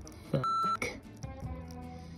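A short, steady, high-pitched censor bleep, about a third of a second long, about half a second in. It covers a word the speaker starts with "F". Background music plays underneath.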